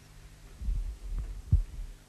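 Dull low thumps over a steady low electrical hum, with one sharper knock about one and a half seconds in: handling noise from a band's amplified instruments and microphones on a stage.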